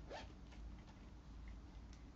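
Near-silent room tone with one short, soft scrape just after the start and a couple of faint ticks: handling noise.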